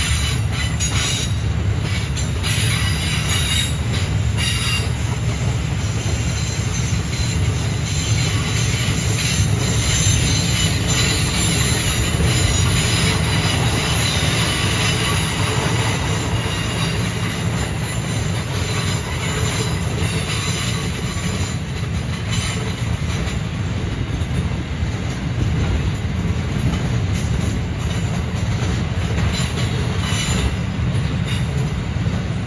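Grain hopper wagons of a freight train rolling past close by: a steady rumble of steel wheels on the rail, with some brief clicks and rattles in the first few seconds.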